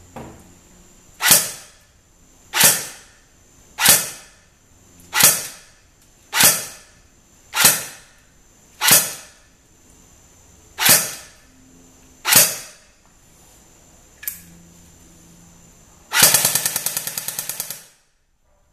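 Cyma CM.030 electric airsoft Glock 18C firing 6mm BBs into a chronograph: nine single semi-auto shots about 1.2 seconds apart, each the short cycle of its battery-driven metal gearbox. A lighter click follows, then near the end a fast full-auto burst of almost two seconds.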